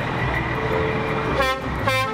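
Truck horns honking in two short blasts near the end, over a steady low rumble of truck engines.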